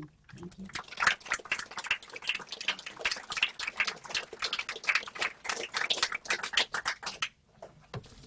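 Audience applauding: a dense patter of many hands clapping that stops abruptly about seven seconds in.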